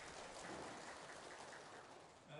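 Audience applauding: many hands clapping in a dense patter that thins out near the end.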